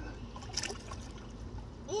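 Swimming-pool water sloshing around a child standing in it, with a short splash about half a second in, over a steady low rumble.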